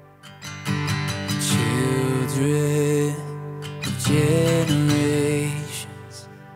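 Worship band song: strummed acoustic guitar chords with a voice singing two phrases of the melody.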